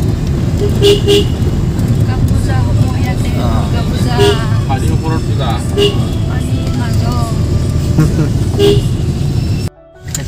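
Road traffic: a steady low rumble of vehicles with short horn toots, a double toot about a second in and single toots about four, six and nine seconds in, over voices.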